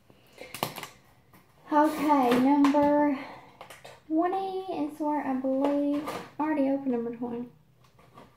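A woman's voice singing a wordless tune in long held notes, in three phrases. A few sharp handling clicks come just before the first phrase.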